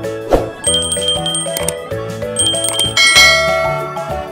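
Cheerful background music for children, with bright bell-like chimes ringing over it a few times.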